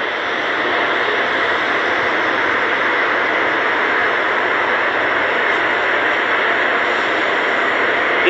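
A loud, steady rushing noise with no distinct tones, holding level throughout.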